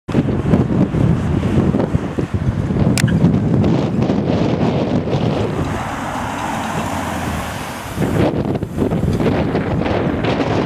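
Heavy wind buffeting the microphone, with a car driving past in the middle: the 2007 Jaguar XKR and its supercharged V8. The passing car stands out as a smoother sound for a couple of seconds before the wind rumble returns.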